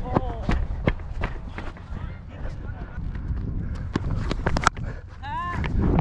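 Footsteps of a cricket batsman running between the wickets on a concrete pitch, heard close from his helmet-mounted camera, with wind rumbling on the microphone. A short shout comes just after the start and another near the end.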